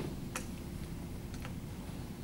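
Steady low room hum in a quiet snooker hall, with two faint sharp clicks about a second apart.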